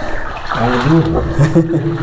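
Sandalled feet wading and splashing through ankle-deep water, with a voice talking over it from about half a second in.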